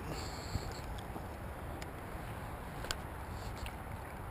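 Low steady outdoor background noise with three faint clicks about a second apart, from handling a spinning rod and reel while a hooked fish is snagged in a root.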